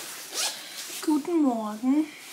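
The zipper of a quilted puffer jacket being zipped up, with scratchy strokes of zip and fabric rustle. In the second half there is a short hummed voice sound that dips in pitch and rises again.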